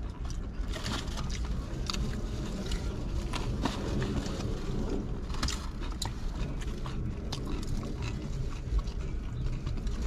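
Close-up chewing and biting of sandwiches, with scattered crinkles and crackles of aluminium foil wrappers being handled, over a steady low rumble inside a car.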